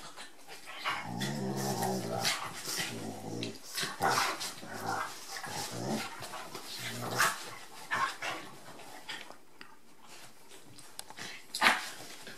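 Two dogs play-fighting on a bed: low play growls, strongest in the first few seconds, mixed with the rustle and scuffle of bodies on the duvet.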